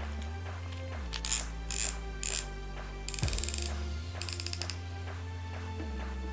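A baitcasting reel clicking in several short ratcheting bursts while it is being reassembled, the longest a run of rapid clicks about three seconds in. Steady background music plays underneath.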